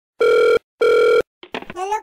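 A telephone ringback tone sounding twice, two short steady beeps about 0.4 s each with a brief gap between them, the double 'tring-tring' ring cadence of an Indian phone line. Near the end a high-pitched voice starts speaking.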